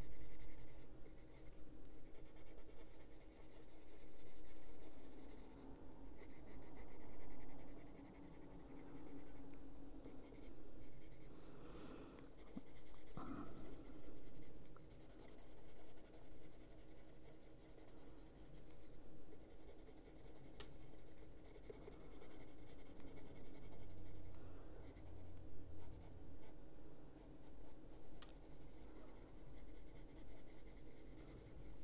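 Caran d'Ache Luminance colored pencil shading on paper, scratching in short back-and-forth strokes that swell and fade every second or two.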